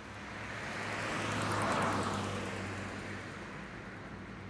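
A car passing by: its noise swells to a peak just under two seconds in and then fades away, over a low steady hum.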